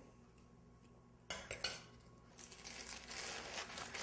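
A bowl and metal spoon set down on a stone countertop with a short clink and knock about a second in, followed by parchment paper rustling as it is picked up.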